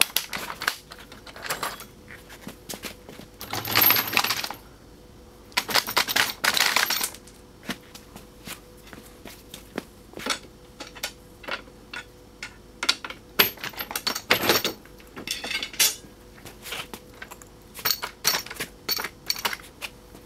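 Metal clanks and clinks of a chrome front axle with its spindles and tie rod being lifted off a hot rod and handled onto a wheeled dolly on a concrete floor, with two longer scraping noises about four and six seconds in.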